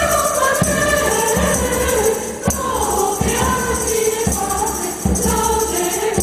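Mixed choir singing a Latin hymn in parts over a steady beat, with jingling percussion and a guitar accompanying.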